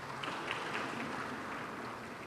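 Audience applauding: a faint, even spatter of clapping across the hall.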